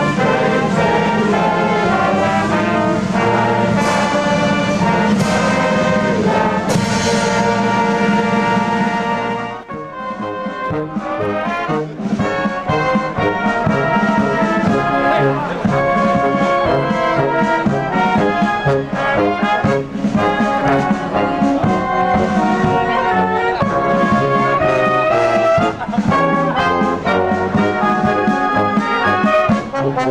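Band music led by brass, with trumpets and trombones playing. There is a brief dip in the music about ten seconds in, then playing resumes.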